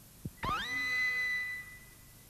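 A short low thump, then a cartoon dentist's drill sound effect: a quick rising whine that settles into a steady high whine for about a second before fading out.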